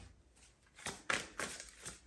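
A deck of tarot cards being handled and shuffled: about five short papery flicks and taps, starting about a second in.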